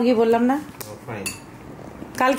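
A plate clinking lightly twice, a little under a second in and again just past a second, after a voice stops.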